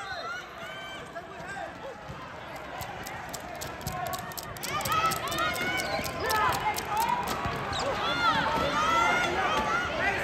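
Sports-wheelchair tyres squeaking on a hardwood gym floor during play: many short squeaks that rise and fall in pitch and grow busier from about halfway through. Rapid light clicks and knocks from the chairs run under the squeaks.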